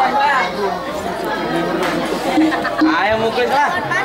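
Overlapping voices: people talking over one another in crowd chatter.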